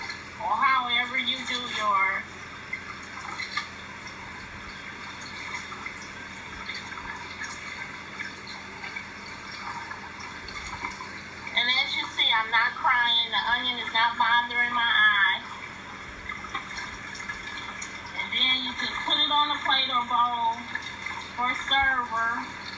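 A person talking in three short stretches, with a steady rushing hiss underneath and in the pauses.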